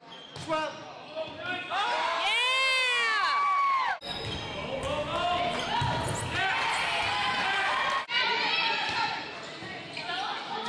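Live sound of an indoor volleyball rally in a gym: the ball being struck and hitting the floor, high rising-and-falling sneaker squeaks on the hardwood about two to three seconds in, and players and spectators calling out. The sound breaks off abruptly twice, at about four and eight seconds, where separate clips are joined.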